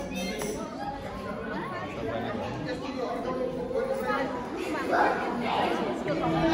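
Indistinct chatter of many people talking at once in a large hall, with no music playing.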